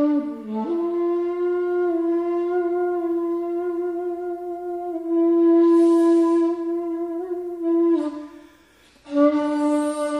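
Shakuhachi (Japanese end-blown bamboo flute) played solo: after a short dip and rise in pitch at the start, one long breathy note is held, its airy breath sound swelling and growing louder in the middle. The note falls away about eight seconds in, and after a brief pause a new, lower note begins.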